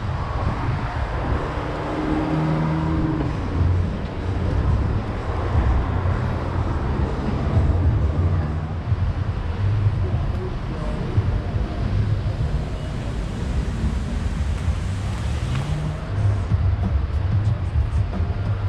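Outdoor ambience with a constant low rumble and no single event standing out.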